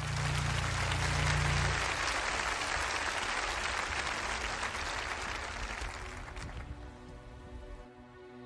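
A large audience applauding, loudest at first and fading slowly away over several seconds.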